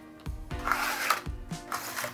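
Clear plastic blister packaging being worked open by hand, with crackling and clicks of the stiff plastic, loudest a little after half a second in and again near the end, over background music with a regular beat.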